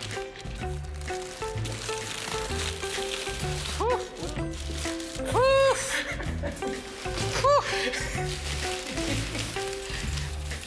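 Background music with a steady, repeating beat, overlaid by three short pitched sounds that rise and fall, about four, five and a half, and seven and a half seconds in, the middle one the longest and loudest.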